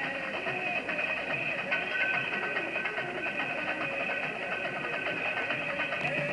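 Live band music: a voice singing over guitar accompaniment.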